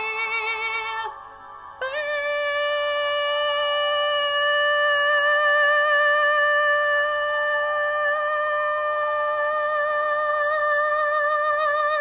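A singing voice, with musical backing, holds a note, breaks off briefly about a second in, then sustains one long final note with light vibrato for about ten seconds, ending the song.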